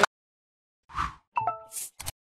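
Sound effects of an animated channel logo sting: a soft pop about a second in, then a quick run of short plinking electronic notes and a high swish.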